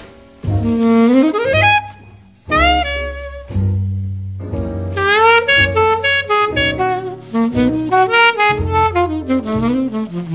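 Instrumental break in a 1950s jazz ballad: a saxophone plays a melodic solo with quick upward runs and held notes, over a walking line of bass notes.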